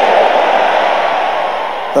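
Congregation's many voices responding together, a dense hubbub that slowly fades.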